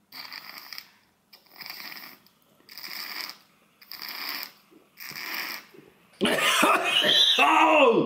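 Five hard sniffs through the nose, about a second apart, as a man tries to suck cola up a drinking straw with his nostril. About six seconds in they give way to a loud outburst of spluttering and laughter.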